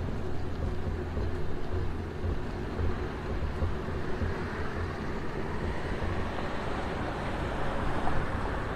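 Outdoor road-traffic rumble: a steady low drone of vehicles, with the hiss of tyres swelling over the last few seconds as traffic passes closer.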